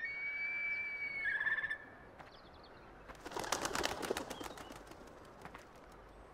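A bird's whistled call: one held high note breaking into a short trill. About three seconds in comes a rapid fluttering flurry of clicks.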